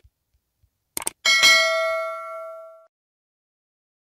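Subscribe-button animation sound effect: a couple of short mouse clicks about a second in, followed at once by a single bell ding that rings out and fades over about a second and a half.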